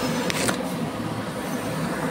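Steady background hum and hiss with no speech, with one short click about half a second in.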